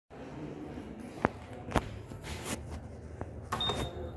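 A few sharp clicks, then a short high beep about three and a half seconds in as the Stannah lift's call button is pressed and lights.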